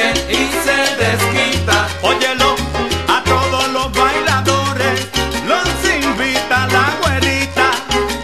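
Salsa orchestra playing an instrumental passage with no singing: a bass line stepping between held low notes under dense percussion and pitched instrument lines.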